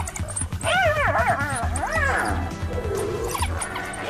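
Background music with a steady low beat, over shrill animal cries that rise and fall in pitch. Several come in quick succession about a second in, another follows near two seconds, and a short one comes near the end, from a fight in which African wild dogs are mobbing a spotted hyena.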